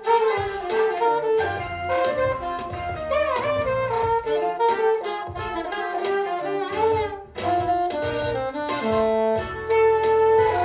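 Saxophone playing a jazzy melody of held and moving notes, with a bend in pitch about three seconds in and a brief breath break near the end.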